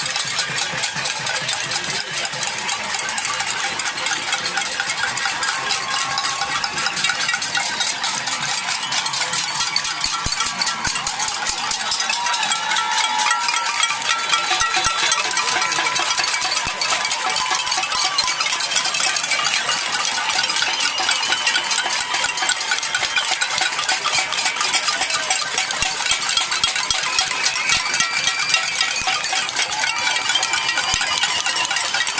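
A crowd banging metal pots, pans and lids in a cacerolada: a dense, unbroken metallic clatter of many strikes at once, steady in loudness throughout.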